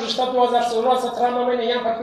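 Speech only: a man speaking continuously into microphones.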